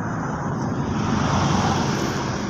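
A motor vehicle passing along the road, its engine and tyre noise swelling slightly toward the end.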